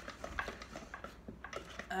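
Electric hand mixer's metal beaters clicking irregularly against a stainless steel mixing bowl as they work cream cheese and milk together.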